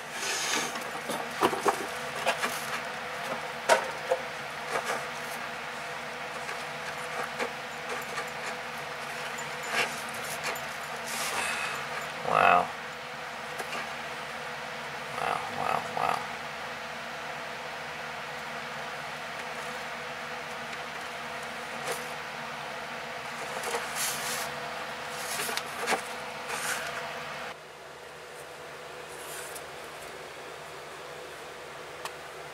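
Handling noise of rubber toy frogs being moved by hand over a wooden shelf: scattered rubs, rustles and light taps against a steady hiss, with a brief louder sound about twelve seconds in.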